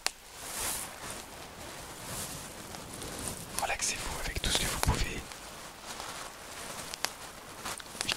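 Close-miked rustling of a fabric pouch being handled and squeezed in the hands, with a few sharp little clicks.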